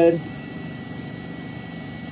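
Z-axis stepper motor of a Two Trees TS2 laser engraver running with a steady faint buzz as the axis is jogged from the touchscreen. The axis has no limit switch, and it is driven against the end of its travel.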